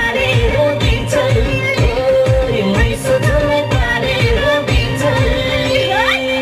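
A woman singing a Nepali folk-pop song live into a microphone over amplified backing music with a steady beat, heard through stage speakers.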